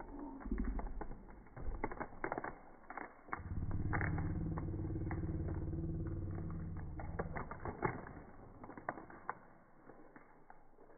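Foil wrapper of a trading-card booster pack crinkling and crackling as it is torn open by hand. A steady low hum runs under it from about three to eight seconds in.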